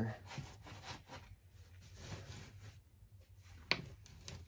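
Soft, irregular rustling and scraping of soil as a gloved hand pushes and pats substrate in around a potted plant, with one sharper click near the end.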